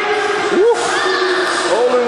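Many children's voices talking and calling out at once, a steady hubbub with a few brief higher calls rising above it.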